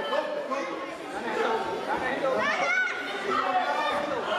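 Several people talking and calling out at once, echoing in a large sports hall, with one rising shout a little past the middle.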